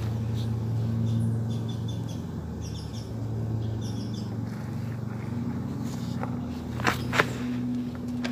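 A steady low machine hum, with a few short high chirps around the middle and two sharp clicks near the end.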